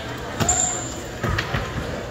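Two or three dull thumps, one about half a second in and more around a second and a half in, over murmuring voices.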